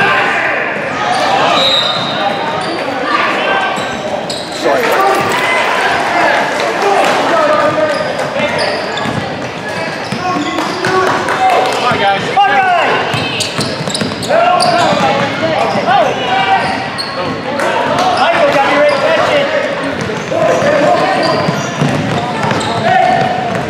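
A basketball being dribbled on a hardwood gym floor under a continuous mix of voices from spectators and players, shouting and calling out, in a large, echoing gymnasium.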